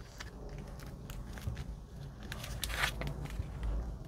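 Folded paper pages of a small booklet being pressed together and handled by hand: soft rustling with scattered small crackles and clicks, and a louder rustle near three seconds in.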